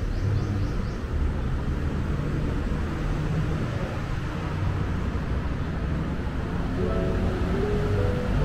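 Steady low background rumble. A simple melody of single music notes comes in near the end.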